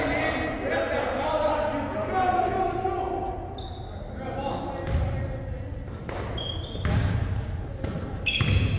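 A basketball bouncing and sneakers squeaking on a hardwood gym floor during a game, with players calling out in the first few seconds, all echoing in a large hall. The squeaks come in the middle and again near the end, among several thuds of the ball.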